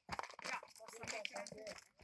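Indistinct voices talking, mixed with a run of sharp clicks and crunching noises.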